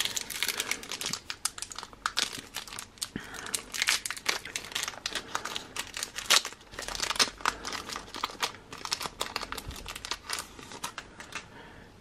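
A trading-card pack wrapper being torn open and crinkled by hand: a continuous run of irregular crackles and rustles as the cards are pulled out.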